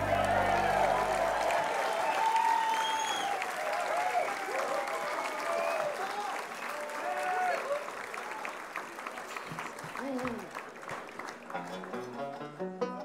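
Concert audience applauding and cheering as a song ends. The band's last low chord dies away in the first second and a half, and the applause thins out toward the end.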